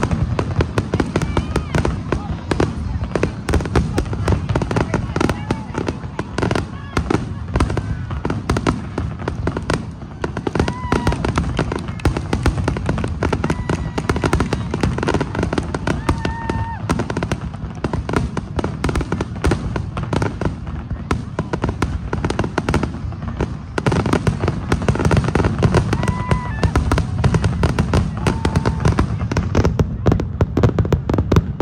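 Aerial fireworks display: a rapid, unbroken run of shell bangs and crackling, growing louder and denser over the last several seconds.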